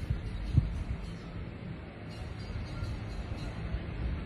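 A pause in speech filled by a low, steady background rumble, with one soft thump about half a second in.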